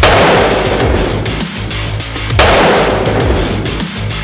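Two Desert Eagle pistol shots about two and a half seconds apart, each a loud boom that dies away slowly, over heavy electronic music.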